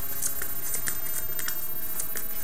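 Trading cards being handled on a play mat as a turn's draw is made: a scatter of light, quick ticks and taps over steady background hiss.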